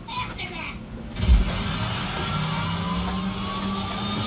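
Television audio: a voice in the first second, then a low thump a little over a second in followed by a steady held music note.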